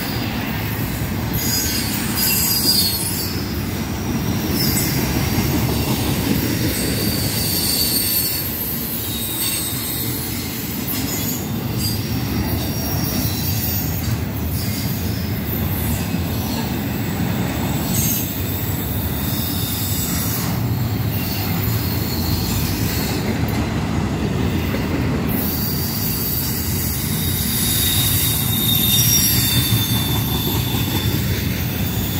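Double-stack intermodal freight cars rolling past on steel wheels: a steady rumble of wheels on rail, with thin high-pitched wheel squeal coming and going.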